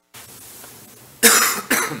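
A person coughs loudly about a second in, a short harsh burst over faint room hiss.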